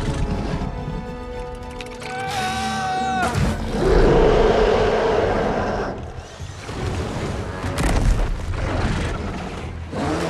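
Film score music over monster-battle sound effects, with booms and a loud crashing burst about four seconds in, then sharp impacts near the end.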